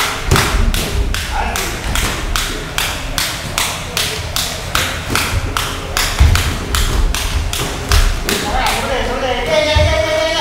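Boxing sparring: heavy thuds of footwork and punches landing, a few seconds apart, over a steady rhythmic tapping about four times a second.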